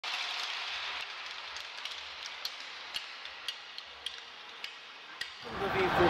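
Ice hockey arena ambience: a steady hiss of rink and crowd noise, slowly fading, with scattered sharp clicks.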